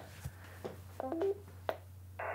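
Xiegu G90 HF transceiver booting up: a click, then about a second in a short electronic beep that steps up in pitch, and another faint click shortly after.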